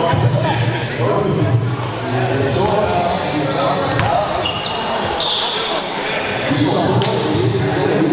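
A basketball bouncing on a gym's hardwood floor, sharpest about four seconds in, under talking voices that fill the hall, with short high sneaker squeaks on the court in the middle seconds.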